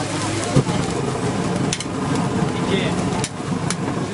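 A metal utensil clinking and scraping on a steel griddle, a few sharp clicks over a steady low hum and background noise.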